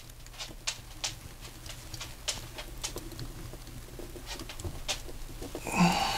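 Small, irregular clicks and taps of toy parts being handled as the Voltron figure's shield peg is worked into the green lion's mouth.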